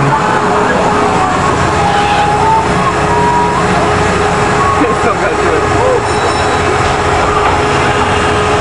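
Steady fairground din: machinery from the amusement rides running with a constant hum.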